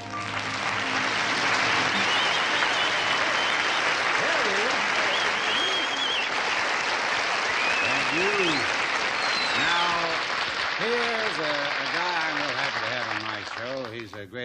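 Studio audience applauding at the end of a song, a steady dense clapping that lasts about fourteen seconds, with a few whistles in it.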